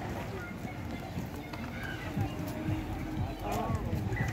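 Voices of people talking in the background, with irregular soft thuds of footsteps close by.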